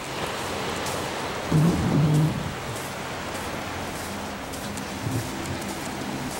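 Steady rushing noise of wind and surf on an open sandy beach, with a brief muffled voice about a second and a half in and faint low droning tones in the second half.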